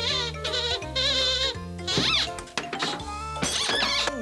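Sweep's squeaky puppet voice, a high wavering squeak, chattering in several short runs, some sliding upward in pitch, over light background music.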